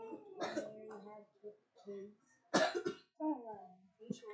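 Faint, off-microphone voices murmuring, broken by a single short cough about two and a half seconds in.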